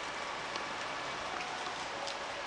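Steady outdoor hiss with a few faint scattered ticks, of the kind rain makes on hard surfaces.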